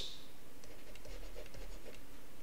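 Stylus writing on a tablet: faint scratching with small ticks as a word is handwritten.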